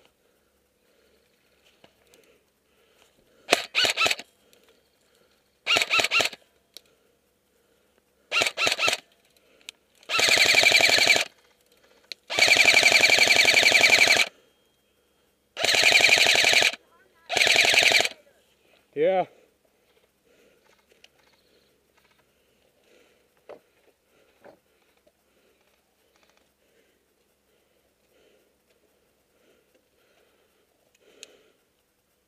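Airsoft electric rifle firing seven full-auto bursts over about fifteen seconds, each a fast, even rattle of shots, the longest about two seconds; then it stops.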